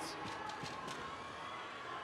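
Low, steady background noise of a robotics competition arena, with a few faint knocks in the first second.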